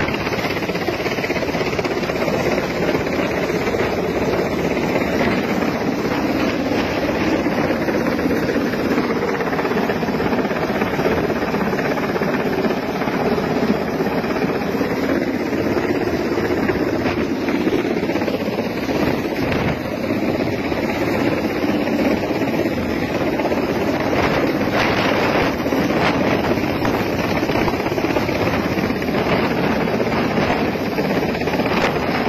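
A large helicopter hovering close overhead, its rotor and engines running steadily, with wind buffeting the microphone.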